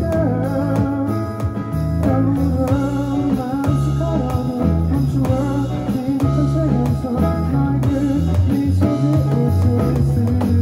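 Live band music: an acoustic guitar, an electric bass and drums played with sticks on an electronic drum pad, with singing over them.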